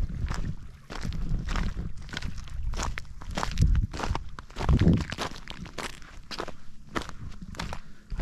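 Footsteps crunching and clattering on a shoreline of loose flat stones, with bursts of low rumble that are loudest about four to five seconds in.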